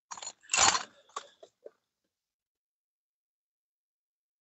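Keys on a keyring being handled: a short rustle, then a few light clicks, all within the first two seconds.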